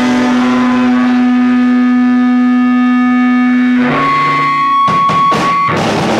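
Amplified electric guitar in a live rock set, holding one sustained, ringing chord for about four seconds. It then changes chord and breaks into short, choppy strums.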